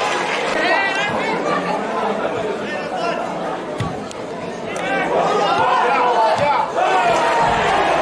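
Several men's voices shouting and calling over one another on a football pitch during open play, as players and bench call out in an otherwise empty stadium.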